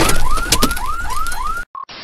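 An edited-in electronic sound effect: a rapid series of rising chirps, about four a second, like a car alarm, over the fading rumble of an explosion effect. It cuts off suddenly about a second and a half in, followed by one short beep.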